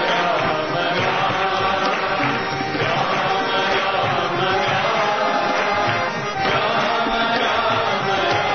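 Devotional bhajan chanting: sung voices carrying a steady chant with musical accompaniment.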